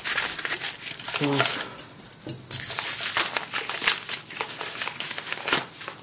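Crinkling and rustling of a parcel's yellow packaging as it is handled and unwrapped by hand: a dense, irregular run of crackles.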